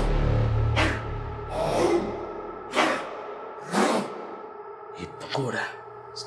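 Heavy, ragged breathing from a man, about one loud breath a second, over a low drone of film score that fades out in the first two seconds. Near the end come short strained vocal sounds.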